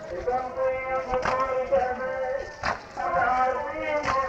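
Shia mourning chant (latmiyya) with a voice chanting held notes, cut by mourners' chest-beating (latm): a sharp unison strike about every one and a half seconds.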